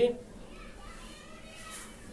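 A man's word breaks off at the very start, then a pause in which only faint, distant voices are heard in the background.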